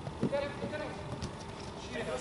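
Five-a-side-style football on artificial turf: a faint shout from a player about half a second in, over a few short knocks of feet and ball on the pitch.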